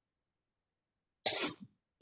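A single short cough about a second in, out of dead silence.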